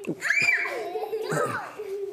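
Young children's voices calling out together, several overlapping at once, with one voice drawn out on a steady note.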